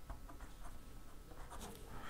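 Ballpoint pen writing on paper: faint, short pen strokes.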